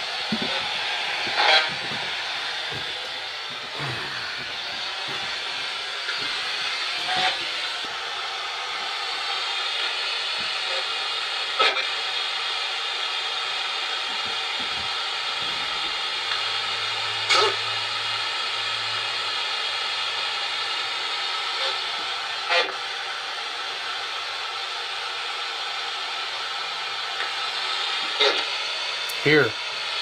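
Steady radio static from a spirit box sweeping through stations, with a brief sharp blip every few seconds.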